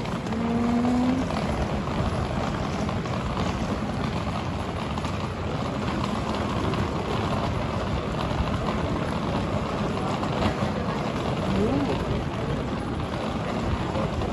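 Crowded shopping-arcade ambience: a steady rumble and murmur of passers-by, with a brief voice near the start and another short voice near the end.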